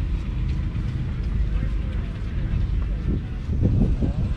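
Massey Ferguson 135's three-cylinder diesel engine idling with a steady low rumble, with people's voices nearby near the end.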